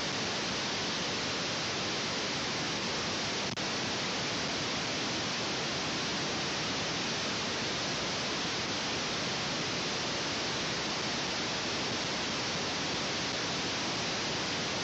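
Steady, even static hiss with nothing else standing out; it drops out for an instant about three and a half seconds in.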